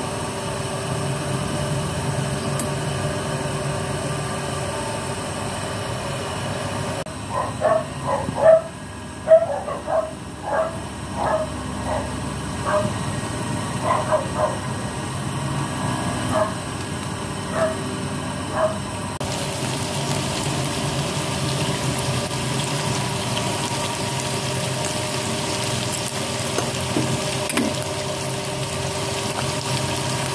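Steady noise of water boiling in a pot on a gas stove. In the middle there are about a dozen short, sharp animal calls, spread over some twelve seconds and loud against the boiling.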